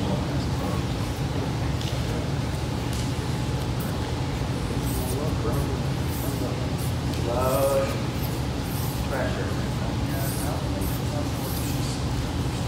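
Indistinct talking, with a few short stretches of voice around the middle, over a steady low room hum. Occasional soft rustles come from bodies shifting on a grappling mat.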